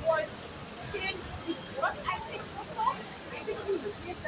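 A steady high-pitched whine, with faint scattered voices underneath.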